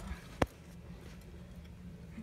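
A single sharp click about half a second in, over a quiet steady background.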